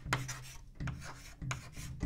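Chalk writing on a chalkboard: a quick run of short, scratchy strokes as a word is written and then underlined twice.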